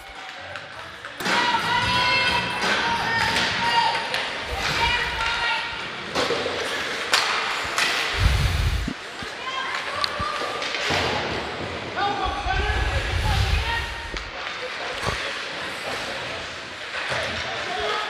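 Ice hockey rink ambience: voices of players and spectators calling out in the echoing arena, with scattered sharp clacks of sticks and puck and dull thuds against the boards.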